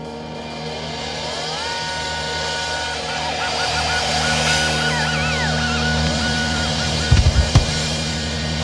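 A rock band opening a song: electric guitar notes swell in and are held, some sliding up in pitch and high notes wavering in the middle, over a low held note. Drums come in with a few heavy kick-drum hits near the end.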